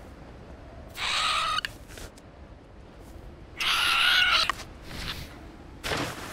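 Two calls from a cartoon bird. The first comes about a second in and lasts about half a second; the second, longer and louder, comes around four seconds in.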